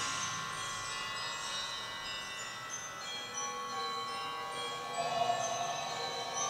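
Soft background music of sustained, chiming, bell-like tones, with a lower note coming in near the end.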